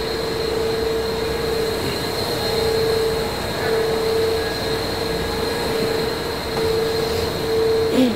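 Steady drone of plant machinery and ventilation in an equipment room, with a constant low hum tone and a faint high whine over the rushing noise.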